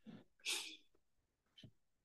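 Faint breathy puffs from a woman close to the microphone, two short ones in the first second, then a soft click later on.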